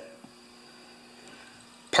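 A pause between speech: quiet garage room tone with a faint steady hum and one small tick about a quarter second in. A man's voice trails off at the start and begins again near the end.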